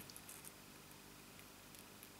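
Near silence: room tone with a few faint light clicks, from fingers pressing paper flowers onto a card.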